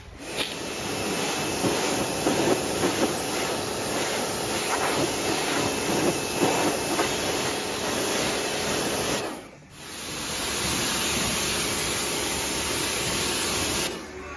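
Pressure washer jet spraying water onto a dirt bike, a loud steady hiss with uneven spattering as the water hits the plastics. The spray stops briefly about two-thirds of the way through, then starts again steadily.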